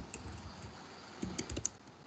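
Typing on a computer keyboard: a few faint key clicks, then a quick run of keystrokes a little past the first second.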